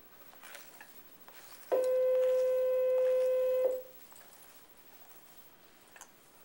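A single steady electronic tone, held about two seconds and starting and stopping abruptly, with faint rustle of a comb through wet hair around it.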